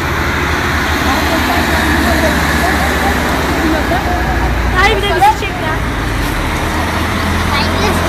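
Steady roadside street noise, a low rumble and hiss of road traffic, with voices calling out now and then, the clearest shout about five seconds in.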